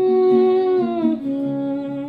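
Woman humming a wordless melody over her acoustic guitar: one long held note that drops to a lower held note about a second in.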